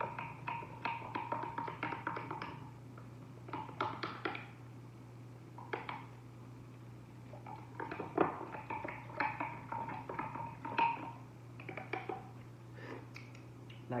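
Quick light clicks and taps of a small metal funnel rattling in the neck of a glass carafe as sugar is worked through it into the drink. They come in bursts, busiest at the start and again past the middle, over a low steady hum.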